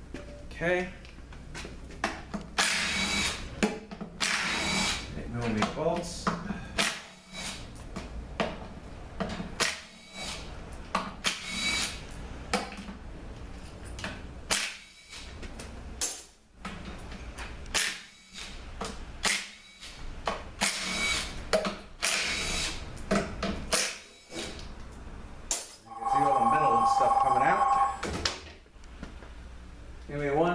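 Power tool running in many short bursts as the oil pan bolts are run out of a 4T45E transmission. A telephone rings with a steady two-tone ring about 26 seconds in.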